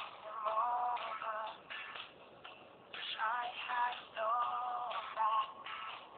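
A song with a sung vocal line playing from a Samsung Omnia i900 phone's small speaker as it streams a video, thin-sounding with no deep bass or high treble.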